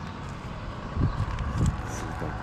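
Steady low rumble of a motor vehicle's engine running nearby, with two dull thumps about a second in and half a second later.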